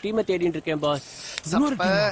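Men's voices in film dialogue, broken about a second in by a short, high hiss that lasts about half a second.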